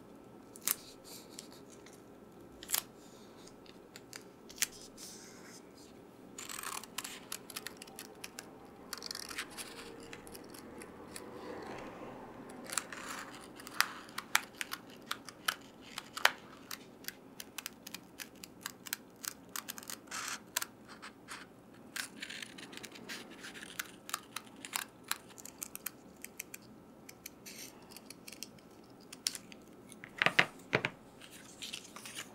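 Close-up bookbinding handling sounds as a cut-out cat is fixed onto a hardcover book case: many scattered sharp taps and clicks over light rustling and rubbing of paper and board. The clicks come thickest in the second half.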